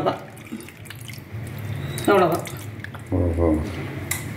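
Tamarind water poured from a small vessel onto soaked flattened rice in a steel bowl, splashing and dripping during the first couple of seconds.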